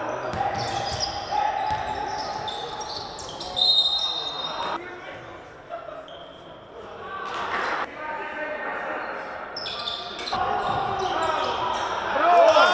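Live basketball game sound in a large, echoing hall: a ball dribbled on the hardwood court, players calling out, and a few short high-pitched squeaks.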